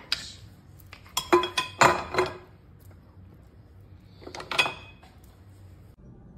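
Wooden-handled silicone cooking utensils knocking and clinking against each other and a ceramic utensil crock as they are put into it. A quick run of knocks with a short ring comes about a second in, and a second cluster just past four seconds.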